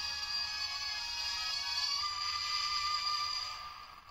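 Music played through the small built-in speaker of a Premium Bandai light-and-sound Sevenger figure. It sounds thin, with no bass, and fades out near the end.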